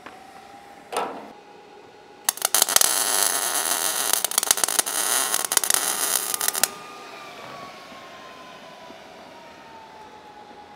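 Electric arc welding on the steel frame of a trailer: a loud, steady crackle of the arc that starts a little over two seconds in, lasts about four seconds and cuts off suddenly as the bead is finished. A single knock comes about a second in, before the arc is struck.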